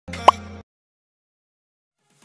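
A short pop sound effect with a quick upward pitch sweep, about half a second long, marking an on-screen Follow button being clicked.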